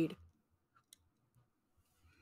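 The last syllable of a woman's sentence trails off, then a pause of near silence broken by two or three faint, short clicks about a second in.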